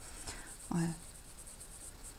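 Faint, soft scratching of a paintbrush stroking black paint onto a cloth dish towel.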